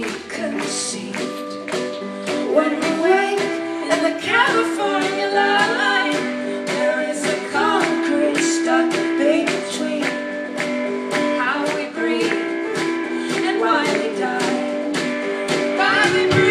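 Live indie band playing a song: acoustic guitar, electric bass, drums and keyboard, with a woman singing over a steady beat.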